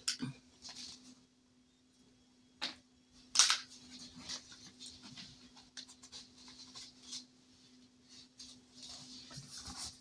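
Paper money and a cardboard card being handled, with a metal paper clip slid on: two short rustles about three seconds in, then light scratching and clicking handling noises over a faint steady hum.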